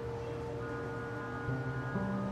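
Soft solo piano background music: a held note slowly fading, with a few quiet new notes coming in about halfway through.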